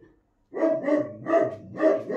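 A dog barking in a run of about four sharp barks, roughly two a second, starting about half a second in. It is alarm barking at the wind, not at anyone at the door.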